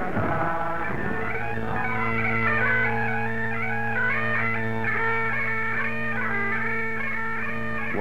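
Great Highland bagpipes playing a quick tune over steady drones, coming in about a second in.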